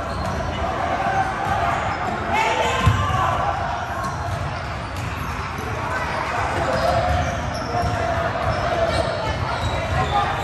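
A basketball bouncing on a hardwood gym floor, with one sharp bounce about three seconds in, over steady chatter and shouts of players and spectators echoing in a large hall.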